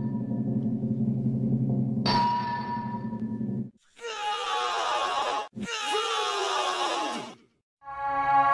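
Edited production-logo jingles: a steady droning chord with a sharp, bright chime about two seconds in, cut off abruptly, then two bursts of falling, sliding tones.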